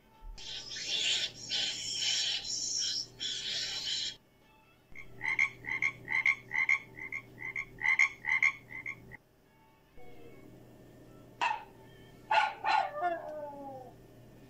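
A frog calling: a run of short pulsed croaks, about three a second, for about four seconds in the middle. Before it comes a steady raspy buzzing, and near the end a few sharp short calls that fall in pitch.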